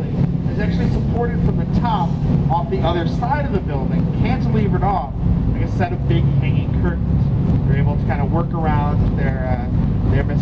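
Tour speedboat's engine running steadily as a low hum under the chatter of passengers' voices, with some wind on the microphone.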